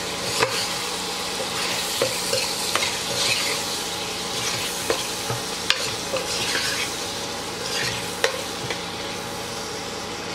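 Prawns sizzling in oil in a pressure cooker while a metal spoon stirs them. The spoon scrapes and taps against the pot at irregular moments, about half a dozen times.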